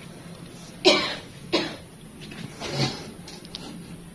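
Three coughs, the first the loudest, over the steady low hum of an electric fan motor turning a wall-clock face fitted on its hub as a makeshift blade.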